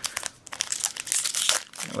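Foil wrapper of a Magic: The Gathering booster pack crinkling and crackling in the hands as it is opened, a quick run of irregular crackles that grows busier about half a second in.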